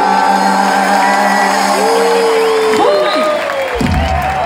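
Live band music over a festival PA, heard from within the crowd: long held chords, with a crowd cheering and whooping.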